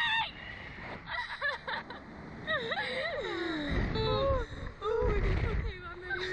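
Two riders on a slingshot thrill ride laughing and shrieking in high, sliding squeals, with gusts of wind rushing over the microphone about two-thirds of the way in.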